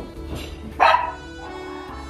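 A Rottweiler puppy gives one short, sharp bark about a second in, with a smaller sound from it just before, over steady background music.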